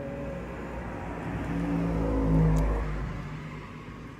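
Vehicle running, heard from inside its passenger cabin: a low rumble with a steady low hum swells to a peak about two and a half seconds in, as if accelerating, then eases off.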